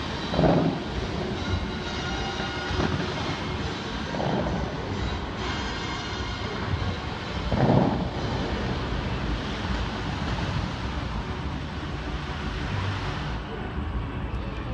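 Bellagio fountain water jets shooting up and spraying, a steady rushing roar, with two louder swells about half a second in and near eight seconds.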